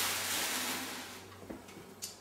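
Tissue paper rustling and crinkling as it is crumpled and pushed into the mouth of a glass vase, fading out after about a second, with one light tap about one and a half seconds in.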